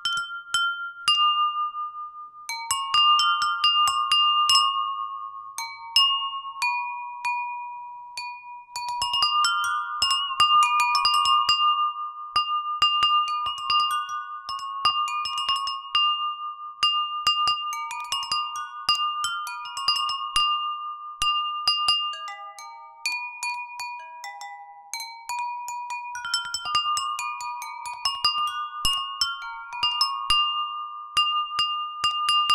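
Jal tarang: a set of water-tuned ceramic bowls struck with thin sticks, playing a melody of ringing, bell-like notes, with quick runs in the middle and one note that wavers in pitch a little over a third of the way in.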